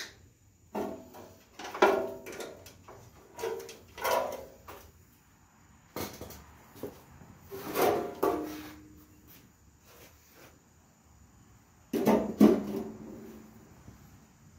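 Intermittent clunks, knocks and scrapes of the Cub Cadet 126's steel rear fender body being worked loose and lifted off the tractor, with the loudest knock near the end.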